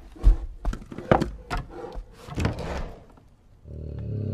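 A run of wooden knocks and thuds as a bear paws at and knocks a wooden box on a table. A low bear growl starts near the end.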